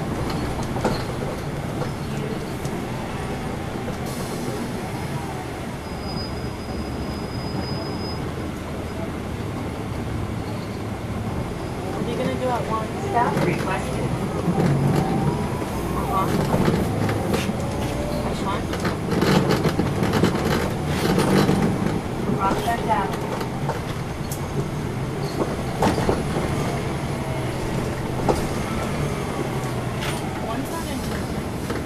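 Inside a moving 2010 NABI 416.15 40-foot suburban bus: the Cummins ISL9 diesel engine and road noise run steadily, with indistinct voices that grow louder through the middle stretch.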